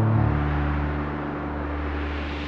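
Logo-intro sound effect: a deep low rumble under a wide wash of hiss. It swells in just after the start and then slowly fades away.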